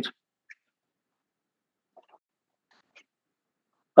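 Near silence in a pause between spoken sentences, broken by a few faint, very short ticks about half a second, two seconds and three seconds in.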